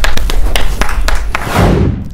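TV show transition sound effect: a fast run of sharp percussive hits over a steady deep bass, ending in a low swell that falls away and cuts off.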